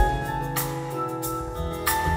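Live band playing an instrumental passage between sung lines, with acoustic guitar, bass guitar, drums and keyboard: held chords with a sharp drum hit as it begins and another near the end.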